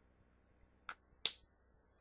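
Two short, sharp clicks about a third of a second apart, the second louder.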